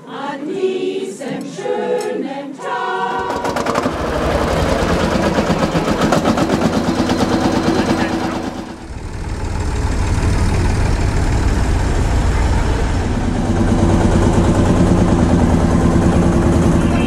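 A choir singing briefly, then, about three seconds in, a Lanz Bulldog tractor's single-cylinder hot-bulb two-stroke engine running with a steady rapid beat. Its sound dips briefly near the middle, then the engine runs on.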